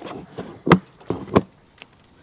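Scissors snipping through plastic packing straps on a cardboard box: two sharp snaps, about two-thirds of a second apart.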